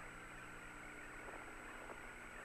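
Faint steady hiss and hum of the Apollo air-to-ground radio channel with no one talking, with a thin steady high tone running through it.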